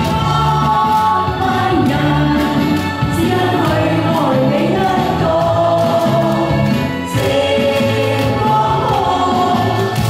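A woman singing a pop song live into a handheld microphone, over instrumental accompaniment with a steady bass line.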